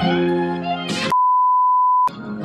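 Music with a held chord cuts off suddenly about halfway through and gives way to a steady single-pitch test-tone beep, the reference tone that goes with colour bars.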